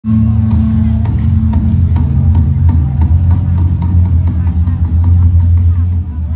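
Mor lam band music played live through a large outdoor concert sound system, dominated by heavy bass, with a steady drum beat of about three hits a second.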